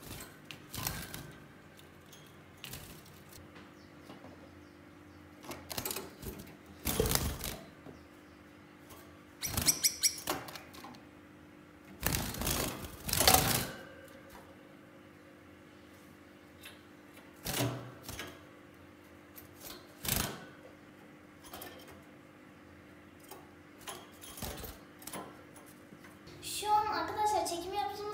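Gouldian finches moving about a wire cage: scattered short bursts of fluttering and scrabbling against the bars and perches, the loudest a little before and after the middle, over a faint steady hum. The birds are frightened.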